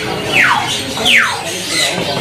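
Caged domestic canaries calling: two quick chirps that slide down in pitch, one about half a second in and another just after a second, over background chatter.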